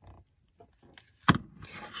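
Handling of a glue tape runner on paper: a brief faint rasp, then one sharp knock a little over a second in as the tool is set down on the cutting mat, followed by soft paper rustling.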